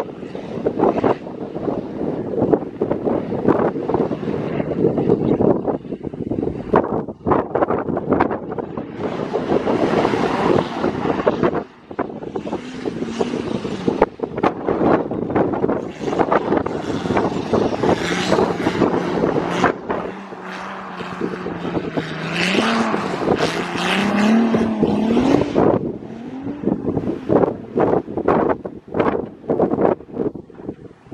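Turbocharged BMW E46 3.0 straight-six on a straight-piped exhaust, revving up and down hard while drifting, the revs rising and falling repeatedly, most plainly in the second half; the sound drops away briefly about twelve seconds in and turns choppy near the end.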